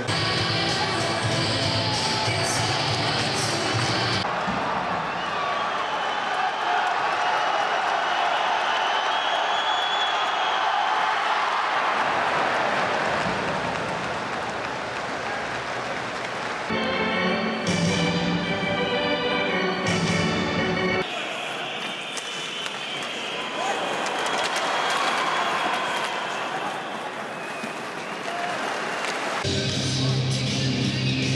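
Ice hockey arena crowd cheering and applauding after a goal, with arena music playing at the start, again for a few seconds in the middle, and at the end.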